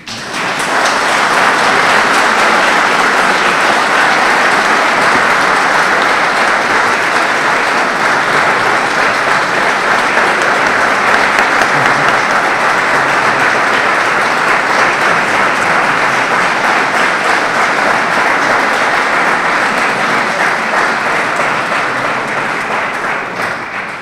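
An audience applauding a lecture in a large hall: sustained clapping that starts at once, holds steady for about twenty seconds, then dies away near the end.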